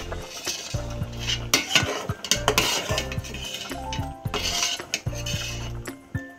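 A spatula knocking and scraping against a metal cooking pot as a boiling stew is stirred, over background music with a repeating bass note.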